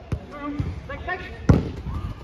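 Football being kicked on an artificial-grass pitch: a lighter touch just after the start, then a hard strike about one and a half seconds in.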